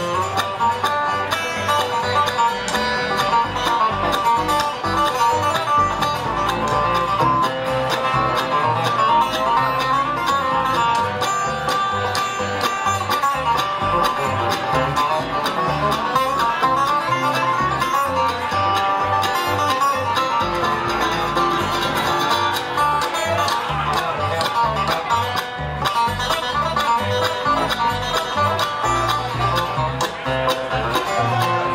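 A live bluegrass band plays an instrumental break with no singing: five-string banjo, acoustic guitar and upright bass, steady and continuous.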